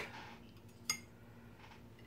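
Quiet room tone with a faint steady hum and a single short, light click about a second in.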